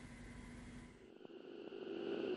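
Faint background hiss and ambient noise, growing slowly louder in the second half.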